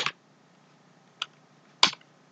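Computer keyboard keystrokes: the tail of a quick flurry at the start, then two separate key presses, a faint one a little past a second in and a sharper one near the end.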